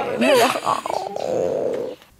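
Women laughing and exclaiming, ending in one drawn-out, falling, rough-edged vocal sound that cuts off sharply just before the end.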